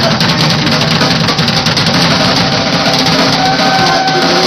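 Punk rock band playing live, with the drum kit close and prominent: a steady run of drum and cymbal hits over electric bass and guitar.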